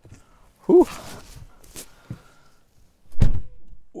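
Rustling and a click as someone climbs into a Tesla Model 3, then the car door shutting with a deep thunk near the end.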